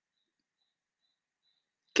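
Near silence in a pause between a man's spoken sentences; his speech resumes at the very end.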